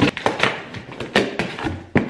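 Cardboard shipping box being opened by hand: a quick run of sharp taps, scrapes and rustles as the flaps are pulled apart.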